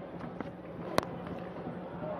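A cricket bat striking the ball once with a sharp crack about a second in, a cleanly middled shot off an over-pitched delivery. Under it runs a low, steady stadium background.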